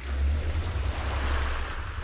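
Atmospheric opening of a song: a swelling rush of surf-like noise over a deep, steady bass drone, with no melody yet.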